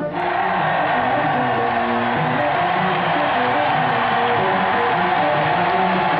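Music with a melody that moves in short steps, mixed with the dense, steady din of a large crowd; both start abruptly just after the narration stops.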